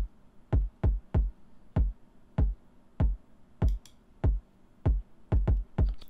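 A soloed electronic kick drum playing on its own: about a dozen short, deep thumps, each with a click at the start and a quick drop in pitch, in an uneven, syncopated rhythm with gaps of silence between hits.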